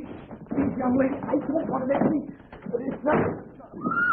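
Voices crying out and exclaiming without clear words, ending in a high rising-and-falling shriek.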